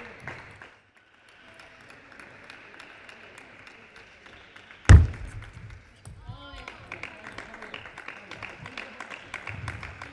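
Table tennis ball clicking off bats and table in a quick run of sharp ticks during a rally in the second half, over hall noise. A single loud thump about halfway through stands out as the loudest sound.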